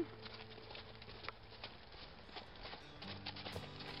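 Faint hoofbeats of a horse trotting on snow-covered arena footing: scattered light thuds.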